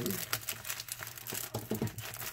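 Paper and plastic rustling and crinkling as a stuffed folder packet is pushed into a Priority Mail flat-rate envelope, a snug fit, with many short irregular crackles.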